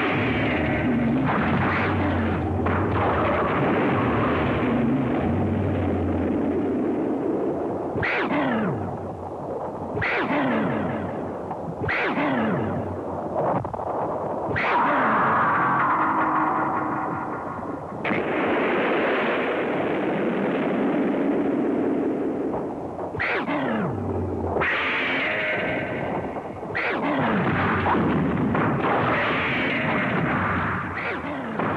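Giant-monster fight sound effects: a dense, loud bed of explosion-like rumbling and blasts, cut by quick falling screeches, three in a row about a third of the way in and three more near the end.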